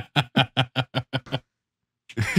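A man laughing in a quick run of short bursts, about six a second, breaking off suddenly about one and a half seconds in.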